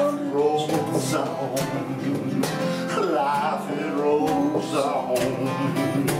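Two steel-string acoustic guitars strumming chords together, with a harmonica playing a bending melody line over them in an instrumental break of a folk-blues song.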